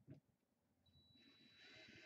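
Very faint: a single click just after the start, then from about halfway a faint steady high whine with hiss as a cordless drill's motor turns slowly, driving a screw.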